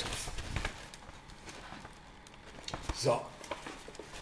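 Faint rustle and a few light knocks in the first second as a cardboard shipping box and a brown paper envelope are handled.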